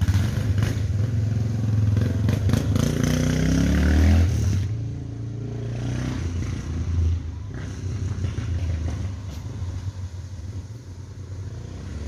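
Motorcycle engine running and accelerating, its pitch rising for a couple of seconds, then dropping away about four and a half seconds in, leaving a lower steady engine rumble that fades toward the end.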